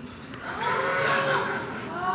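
An audience's collective drawn-out "ooh" of reaction, swelling about half a second in and fading near the end.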